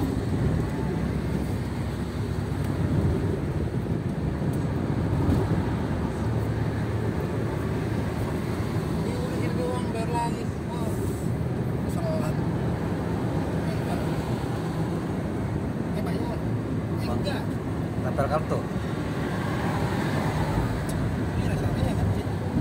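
Steady road and engine rumble heard inside the cabin of a car cruising on a highway, with faint voices now and then.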